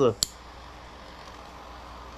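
A man's voice trails off right at the start, then a single sharp click sounds, over a steady low background hum.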